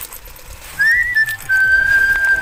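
A high, clear whistle: two short rising notes and a brief note, then one long held steady note.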